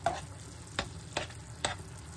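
Plastic spoon stirring a thick ground-pork filling in a nonstick frying pan, knocking against the pan four times over a faint sizzle.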